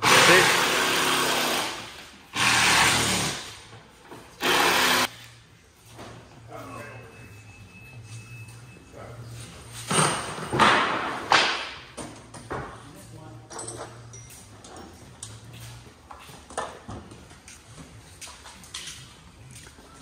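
Handling noise from the large lid of a shipping crate being lifted off and moved: three loud scraping, rustling bursts in the first five seconds, then scattered knocks and shorter scrapes.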